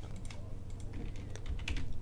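Computer keyboard keys clicking in an irregular run, over a low steady hum.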